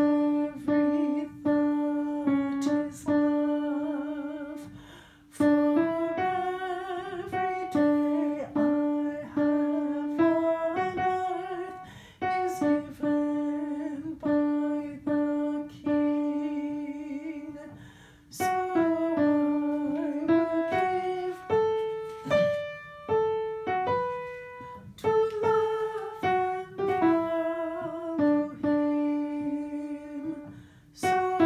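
Upright piano playing the alto line of a hymn in phrases of plain chords and melody, with a voice humming the line along with it in long held notes.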